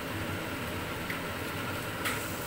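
Chicken and carrots sizzling steadily in a frying pan, with a faint tick about a second in.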